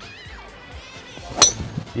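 A golf club striking the ball on a tee shot: one sharp, short crack about one and a half seconds in, over faint background music.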